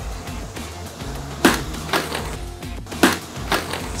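A sledgehammer strikes a motorcycle helmet lying on pavement in a crash test, giving one sharp crack about a second and a half in, followed by a few lighter knocks. Background music plays throughout.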